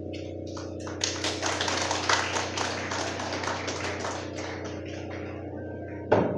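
Congregation applauding a choir's song, starting about a second in and thinning out toward the end.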